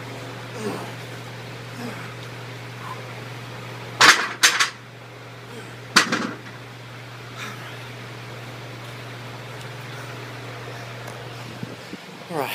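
100-pound hex dumbbells clanking down onto the rack: two clanks close together about four seconds in, then one more about two seconds later, over a steady low hum.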